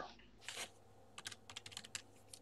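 Faint computer keyboard typing: a quick run of key clicks starting a little past halfway, after a single click about half a second in.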